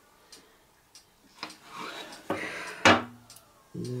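Handling sounds of an upturned plastic pour cup being lifted off a canvas: a soft scraping rustle in the middle, then a sharp knock near the three-second mark. Faint scattered ticks sit underneath.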